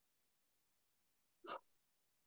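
Near silence: room tone, broken once about one and a half seconds in by a single brief sound.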